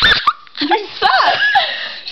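A young woman's voice: a loud laughing cry at the start, then a few high, squeaky yelps that slide up and down in pitch as she laughs through a sing-along.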